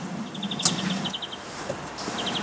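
A bird calling twice in short rapid trills of even, high notes, about a dozen a second, over faint outdoor background noise; a single sharp click about two-thirds of a second in.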